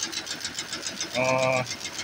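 Industrial multi-needle quilting machine running, its needle bar stitching layers of cover fabric and insulation together in a fast, even rhythm of about ten strokes a second.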